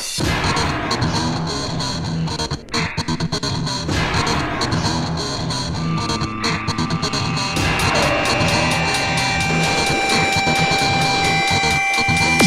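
Psychedelic trance from a live vinyl DJ mix: a steady pulsing bass line, with sustained synth tones coming in about halfway through.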